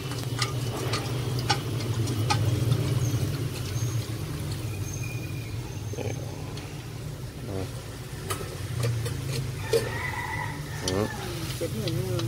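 Wooden chopsticks clicking against a stainless steel bowl as tapioca starch slurry is stirred. The slurry is then poured into a wok of shiitake mushrooms in sauce and stirred, over a steady low hum.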